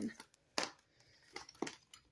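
A girl's voice trails off, then there is a low-level pause broken by a few short, faint clicks or taps.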